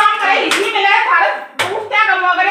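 Women talking loudly in Haryanvi, broken by two sharp hand strikes, one about half a second in and one about a second and a half in.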